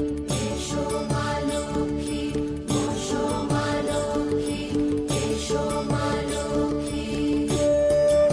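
Bengali devotional song to Lakshmi: sustained melodic notes over a steady drum beat whose bass strokes drop in pitch, with bright jingling on top.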